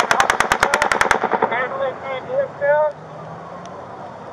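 A long burst of rapid gunfire from a distant elevated shooter, about ten shots a second, heard as fully automatic fire; it stops about a second in. A raised voice follows briefly.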